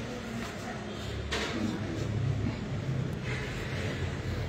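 Muffled, indistinct voices with room noise, and two brief rustles, about a second and about three seconds in.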